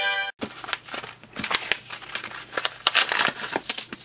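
A mailing envelope and its paper and plastic packaging being opened and handled: irregular rustling and crinkling with sharp little crackles and clicks as the parts are pulled out. It opens with the last moment of a brass jingle, which cuts off a third of a second in.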